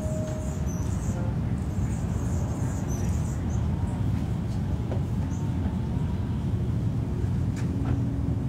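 Steady low outdoor background rumble with no distinct events, and a faint click near the end.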